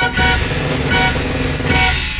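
Background organ music: a run of held chords, each new chord coming in about every half second.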